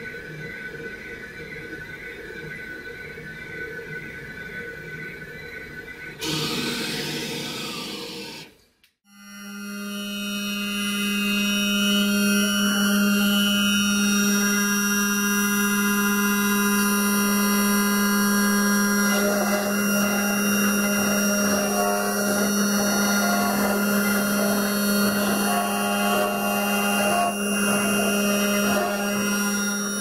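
Roland MDX-540 CNC milling machine's spindle whining steadily as its cutter mills a pocket into a pine block. A louder rasping stretch comes about six seconds in and breaks off near nine seconds, then a louder, steady whine returns and holds.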